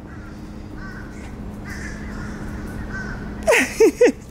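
A crow cawing about three times in quick succession near the end, over a steady low outdoor hum.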